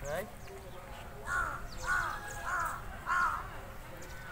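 A crow cawing four times in quick succession, about 0.6 s apart, over faint steady outdoor background noise.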